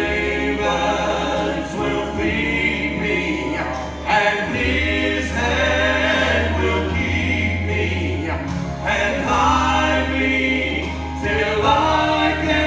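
Male gospel trio singing in close harmony into microphones, holding long notes, over acoustic guitar and bass guitar accompaniment.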